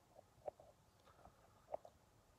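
Near silence, room tone with two faint short mouth clicks, one about half a second in and one near the end.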